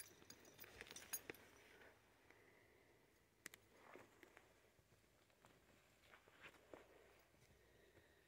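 Near silence with faint, scattered ticks and soft rustles of footsteps on the forest floor.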